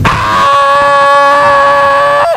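A man's voice imitating a newborn baby's first cry: one long, loud, high wail held at a steady pitch.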